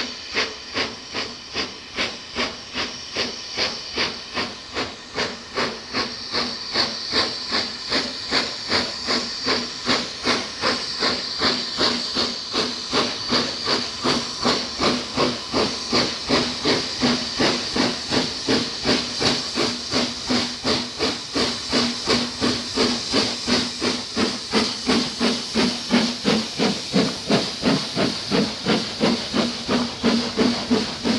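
Steam locomotive working a train, its exhaust chuffing in a steady rhythm of about three beats a second, growing louder as it approaches and comes alongside.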